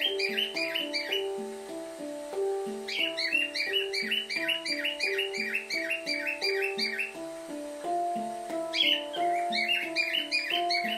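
Pantam handpan in a Kurd scale played with the hands, a steady stream of ringing, overlapping steel notes. Behind it, bursts of rapid bird chirping come and go: until about a second in, from about 3 to 7 seconds, and again near the end.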